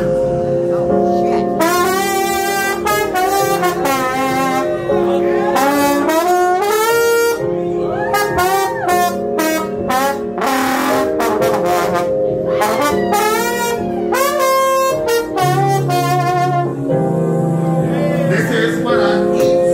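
Trombone solo played into a microphone over a live band, the melody often sliding up and down between notes.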